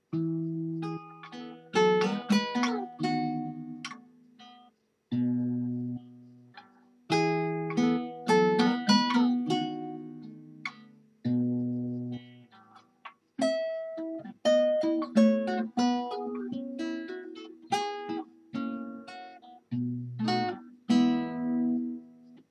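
Acoustic guitar melody plucked expressively, in phrases of ringing, decaying notes separated by short pauses. It is picked up through a low-quality webcam microphone.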